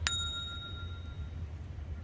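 A single bright bell-like ding, a notification chime sound effect for a subscribe-reminder banner, struck once at the start and ringing out over about a second and a half.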